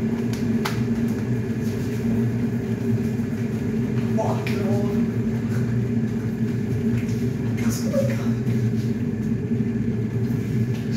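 Steady low hum of an electrical appliance running, with a few short knocks.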